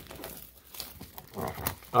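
Plastic shrink-wrap crinkling faintly as it is peeled off a cardboard trading-card box and handled, with a few soft ticks, and a short low throaty sound near the end.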